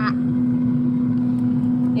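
Air fryer's fan running, a steady, fairly loud hum at one even pitch.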